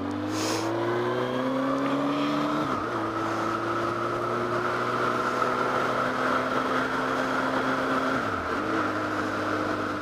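Honda CB900F Hornet's inline-four engine pulling away under acceleration, its note climbing and then holding steady, with brief dips at gear changes about three seconds in and again near the end. Steady wind rush on the helmet-mounted microphone.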